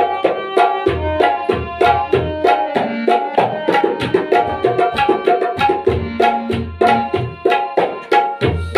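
Instrumental ghazal passage: a harmonium plays a sustained melody while a tabla keeps a quick steady rhythm of several sharp strokes a second, with deep booming strokes from the bass drum coming and going.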